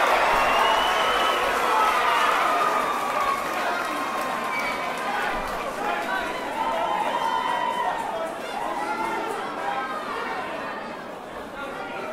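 Boxing crowd shouting and cheering at a knockdown. Many voices overlap, loudest in the first couple of seconds, then easing into steady chatter.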